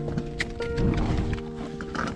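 Background music with held notes, over a hiker's footsteps on a dry, leaf-littered rocky trail and the sharp clicks of trekking-pole tips striking rock.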